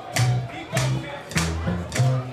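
Drums struck with sticks in a steady beat, a little under two strokes a second. Each stroke carries a low bass note that changes pitch from beat to beat.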